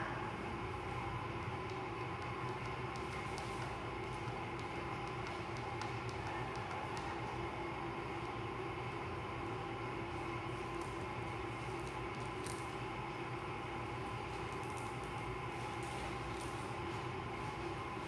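Clear adhesive tape being slowly peeled off a tabletop, heard as faint scattered crackles over a steady room hum made of several constant tones.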